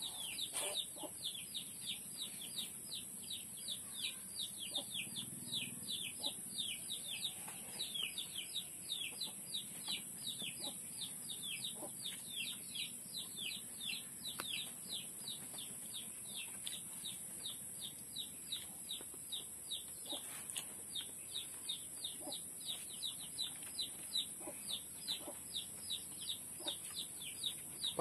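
Birds chirping in a quick, steady series of short falling chirps, about three a second, over a constant high-pitched hiss.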